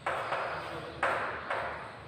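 Chalk writing on a chalkboard: four short scratching strokes, each starting sharply and fading, stopping shortly before the end.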